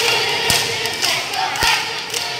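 A group of children's voices chanting together in a cheer-dance routine, with two sharp thumps, one about half a second in and one near the end.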